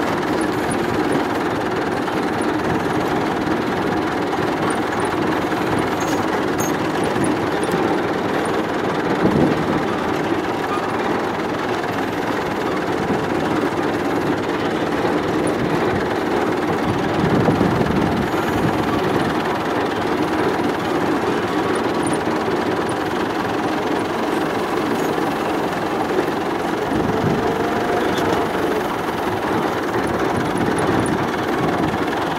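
Massey Ferguson 65 tractor engine running steadily under way, heard close to its exhaust stack, with one brief louder swell about halfway through.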